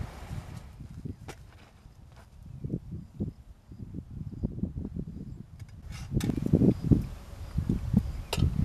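Footsteps and rustling on dry grass and soil, then scattered light clicks and knocks of tea glasses and plates being handled at a picnic cloth, louder toward the end.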